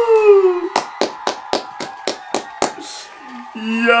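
One person clapping their hands, about nine sharp, even claps over two seconds, a little over four a second. A short falling shout comes before the claps, and a drawn-out "Yo!" starts near the end.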